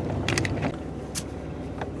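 Vehicle heard from inside the cab, driving slowly: the engine runs steadily and the tyres roll over a wet dirt road, with a few light clicks.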